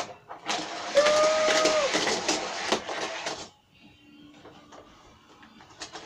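Toy cars rolling and clattering down a plastic spiral ramp track, a dense rattle of many small clicks that lasts about three seconds and then stops.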